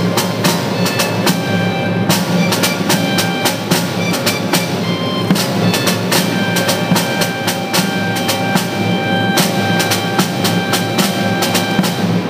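Snare drum beaten in a rapid, continuous stream of strokes under sustained held choral chords.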